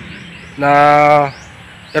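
A man's voice holding a drawn-out filler "naaa" at a steady pitch from about half a second in, over faint bird chirps in the background.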